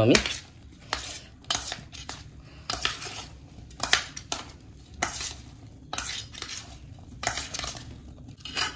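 A metal spoon clinking and scraping against a stainless steel bowl as soya chunks are stirred and mixed, in irregular strokes about once or twice a second.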